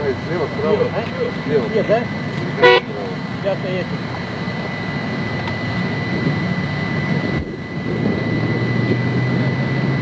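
Indistinct voices over a steady outdoor rumble, cut by one short, high-pitched toot just under three seconds in; a low steady hum sets in near the end.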